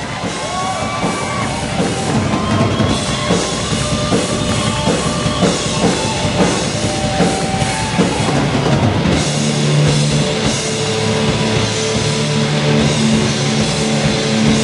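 Heavy rock band playing: busy drum kit and distorted electric guitars, fading up over the first couple of seconds, with gliding guitar notes. About nine seconds in the guitars settle into steady held low chords.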